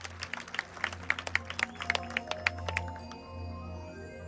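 Marching band front-ensemble percussion in a soft passage: a run of quick, dry taps and short high mallet notes, then gentle sustained notes ringing from about three seconds in.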